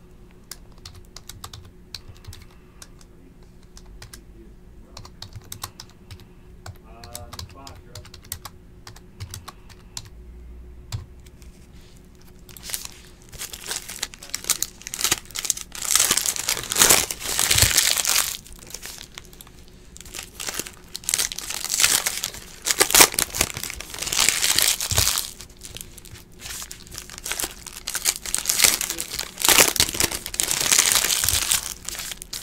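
Plastic wrappers of 2015 Gridiron Kings football card packs being torn open and crinkled by hand. The crinkling comes in loud bursts through the second half, after a quieter stretch of light clicks from handling the cards.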